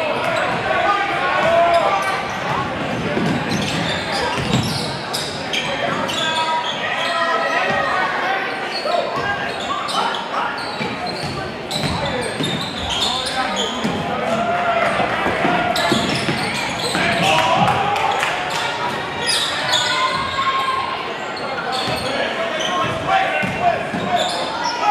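A basketball bouncing on a hardwood gym floor during play, amid a steady hubbub of spectators' and players' voices echoing in a large gym.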